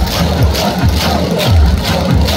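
Loud dance music played over stadium loudspeakers for a cheerleader's routine, with a heavy kick drum beating about twice a second under a high, sharp percussion pattern.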